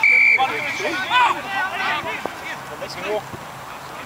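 Referee's whistle, one short blast right at the start, followed by scattered shouts from players and onlookers.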